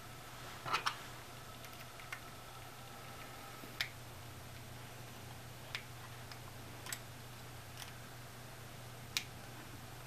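Small, sharp clicks and taps, irregularly spaced, as a precision screwdriver turns the screws of an aluminium bumper case on an iPhone 5 and fingers handle the metal frame. The loudest is a quick double click just under a second in, and a faint steady low hum lies underneath.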